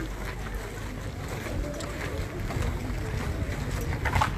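Wind buffeting a phone's microphone as a steady low rumble, with scattered small knocks of handling as the person filming walks.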